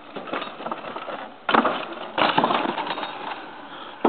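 Wooden double teeter-totter planks slamming down twice, about a second and a half and two seconds in, as a Felt mountain bike rolls across them, with rattling of the bike and boards and tyres on dirt between and after the slams.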